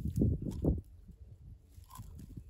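Close handling noise: hands working a clod of dry soil, a run of soft knocks and rubbing that dies away after about a second, leaving only faint background.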